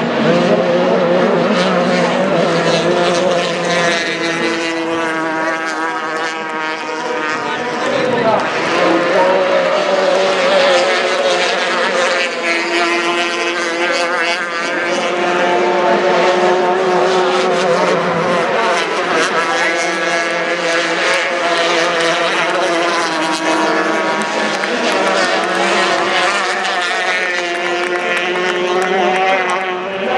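Formula 350 racing boats' two-stroke outboard engines running at high revs, several at once, their pitch rising and falling as they pass and turn.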